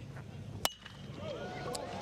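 Metal baseball bat striking a pitched ball about two-thirds of a second in: a single sharp ping with a short ringing tone, the contact on a three-run home run. Crowd noise builds after the hit.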